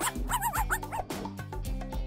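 A dog barking sound effect: a few short, high yips in quick succession in the first second, over background music with a steady beat.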